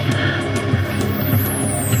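Ambient psybient electronic music: a low, pulsing synth drone, joined about halfway by a series of high-pitched falling sweeps.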